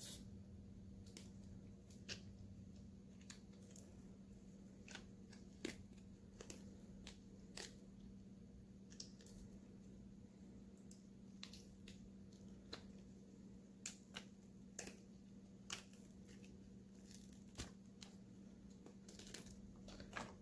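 Silicone mold being peeled off a cured resin wine bottle holder: faint scattered crackles and small ticks as the silicone pulls away from the resin, over a low steady hum.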